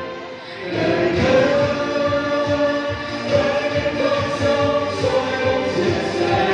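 A vocal group singing together in harmony over a backing track with a steady beat. After a short lull at the start, the voices come back in with held notes about a second in.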